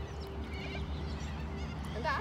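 Birds chirping and calling in short wavy phrases over a steady low rumble.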